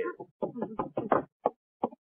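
Knocking on a door: a quick run of raps, then a couple of single knocks near the end.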